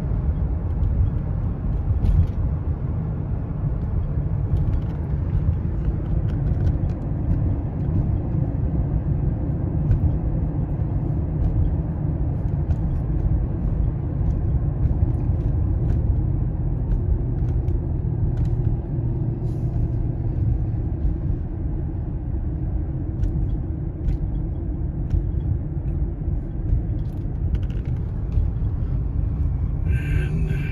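Steady low rumble of road and engine noise heard from inside a moving car's cabin, with a few faint clicks.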